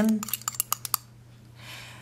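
Glass stirring rod clinking against the inside of a glass beaker while stirring aspirin tablets into distilled water to dissolve them. A quick run of light clinks stops about a second in.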